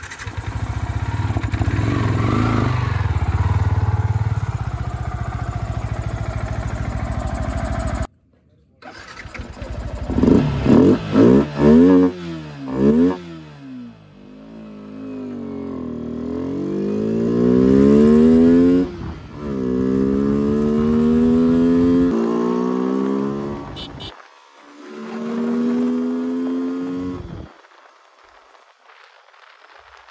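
Yamaha R15 V3's 155 cc single-cylinder engine, fitted with an aftermarket high-performance air filter. It runs steadily for the first several seconds, then gives a few quick throttle blips. It then pulls away with revs climbing through several gear changes, each rise in pitch dropping back lower at the shift.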